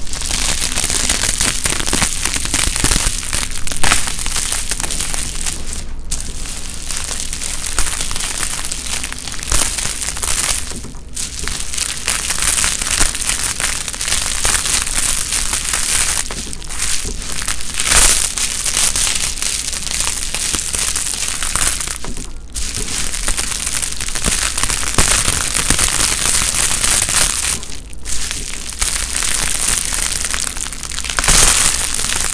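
A sheet of many layers of dried paint being peeled slowly off plastic close to the microphone: a dense, unbroken run of small crackles and tearing, interrupted by a few short pauses.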